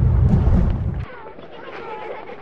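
A loud, deep rumble cuts off abruptly about a second in, leaving faint background chatter of voices.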